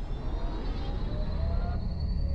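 Sound design for an animated logo sting: a deep, steady rumble with faint thin tones gliding slowly upward above it.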